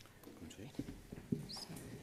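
Faint, off-microphone voices murmuring, with a few soft knocks from microphone or lectern handling.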